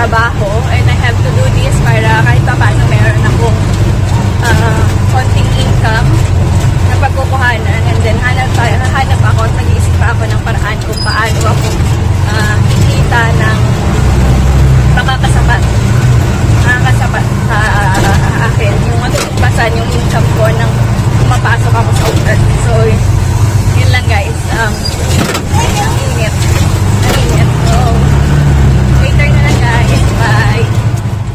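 A woman talking over the steady low drone of a motor vehicle's engine, heard from inside the moving vehicle.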